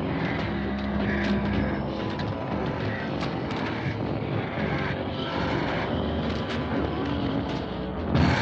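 A steady engine drone.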